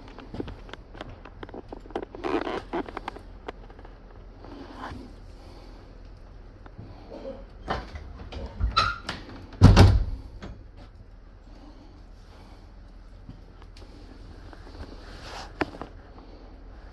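Knocks and clatter of a passenger train's carriage door being handled, with one loud thump about ten seconds in and a steady low hum underneath.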